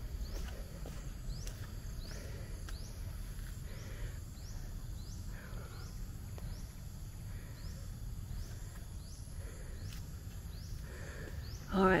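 Quiet outdoor ambience: a short, high rising chirp from a small animal repeats about every two-thirds of a second over a steady low rumble.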